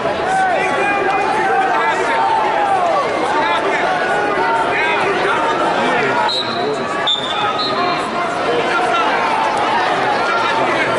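Arena crowd and mat-side coaches calling out over a wrestling bout: many voices overlapping at once. A few brief high squeaks come around the middle.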